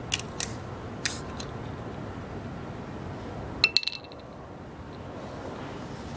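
Glass 40-ounce bottle being handled against a bench: a few light knocks early, then a sharp clinking rattle with a brief ring a little past halfway, over steady outdoor noise.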